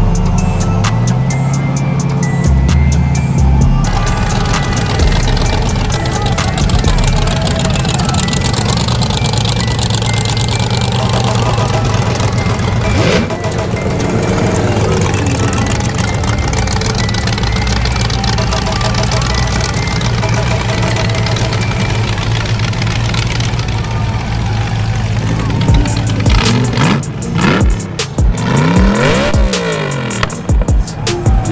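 Show cars driving slowly past under engine power, one after another, over music from a sound system. Near the end, engine revs rise and fall several times.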